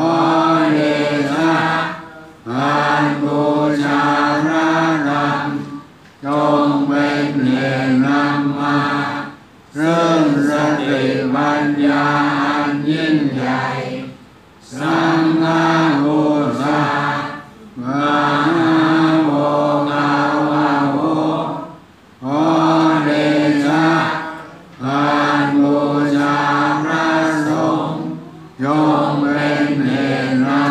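Buddhist chanting in unison at a steady, near-monotone pitch. It comes in phrases of a few seconds each, about eight in all, broken by short pauses for breath.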